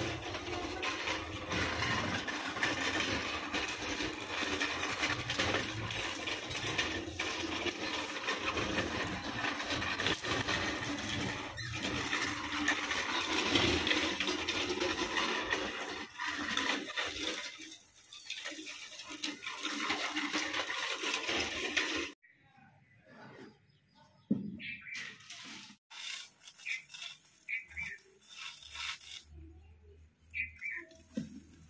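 Short plastic-bristled hand broom sweeping a damp concrete floor in quick repeated scratchy strokes. The sweeping cuts off abruptly about two-thirds of the way through, leaving quieter scattered scrapes and knocks.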